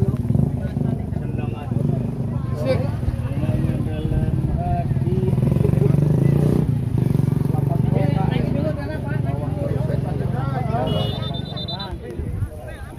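Spectators talking close to the microphone over a steady low engine rumble that grows louder midway and eases off again. A brief high whistle-like tone sounds near the end.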